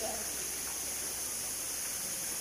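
Steady hiss of running water in a shallow seawater holding pool, even throughout, over a faint low hum.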